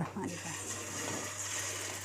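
A chicken mince kebab sizzling in shallow hot oil in a frying pan, just after being laid in: a low, steady hiss.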